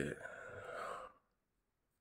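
A man's breathy sigh, drawn out for about a second before it fades.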